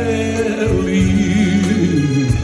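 Live amplified pop-folk music: a male singer on a microphone, backed by a band, with several voices singing the melody together.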